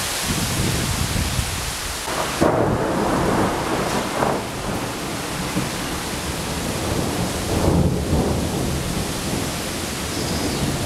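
Thunder rumbling over heavy, steady rain, with two louder rolls: one about two and a half seconds in and another near the eighth second.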